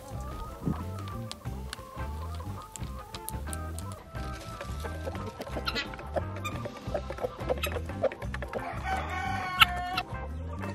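Hens clucking as they feed, over background music with a steady beat; a louder call comes just before the end.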